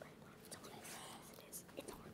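Faint whispering between children conferring in a huddle.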